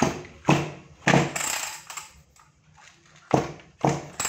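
An old Hitachi chainsaw powerhead being handled and shifted on a tiled floor: a series of sharp knocks and clunks, with a longer rattling scrape about a second in.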